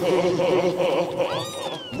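A cartoon creature's warbling cry, its pitch wobbling up and down several times a second, like an ululating war whoop. A high whistle glides down over it in the second half.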